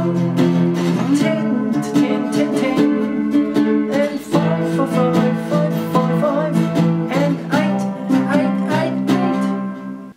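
Three-string cigar box guitar in open E tuning (E-B-E) played with a slide, picking and sustaining chords with gliding slide notes. The chord changes about a second in, about four seconds in and at about seven and a half seconds, and the playing breaks off at the very end.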